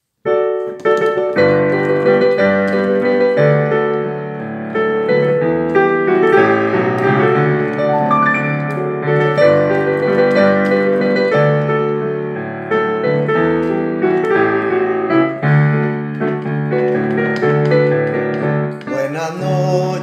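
Piano introduction to a choral hymn: steady sustained chords starting just after the opening. A singing voice comes in near the end.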